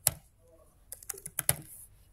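Keystrokes on a computer keyboard typing a short word: one key press at the start, a pause, then a quick run of several key presses about a second in.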